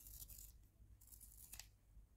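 Faint scraping of a colored pencil being turned in a small handheld metal sharpener, the blade shaving off wood and pigment core. Short, soft shaving sounds near the start and again about a second in.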